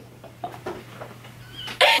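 A few short, quiet bursts of laughter with pauses between them.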